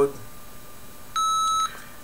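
Arduino blue box beeping through its small speaker as a keypad key is pressed on entering record mode: one steady, clean beep of about half a second, a little over a second in.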